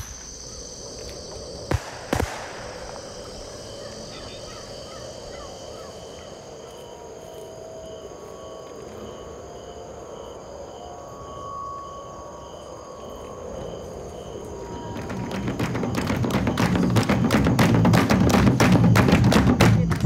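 Crickets chirping steadily at night, with a couple of sharp cracks about two seconds in. From about fifteen seconds, loud fast drumming comes in and builds.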